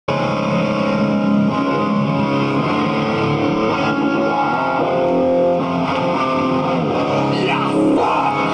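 Distorted electric guitar played live through an amplifier, holding ringing notes and chords, with no drums heard.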